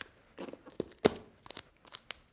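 Duct tape being smoothed and pressed down by hand, giving a few short, scattered crackles and crinkles.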